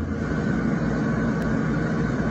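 Steady background noise, an even low rumble and hiss, in a gap between bursts of music.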